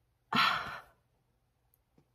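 A woman's sigh: one breathy exhale of about half a second, starting a quarter second in, loud at first and trailing off.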